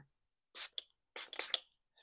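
Small plastic spray bottle misting water: a short hiss about half a second in, then a longer squirt about a second in.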